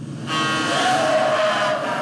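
Car horns honking and tyres screeching, a loud blare of several held tones that starts about a third of a second in.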